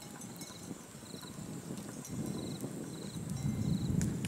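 Insects chirping in short pulsed trills, one about every two-thirds of a second, over a low crackling rustle that grows louder about halfway through.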